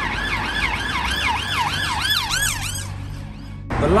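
Emergency vehicle siren in a fast yelp, rising and falling about three times a second, quickening briefly and then stopping about three seconds in, over a low rumble of road traffic.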